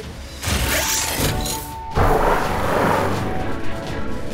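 Cartoon soundtrack: background music with mechanical sound effects, a noisy rush about half a second in and a louder crash-like hit about two seconds in.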